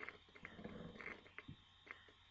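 Near silence: faint room tone with a few soft clicks and a brief, faint low sound a little before the middle.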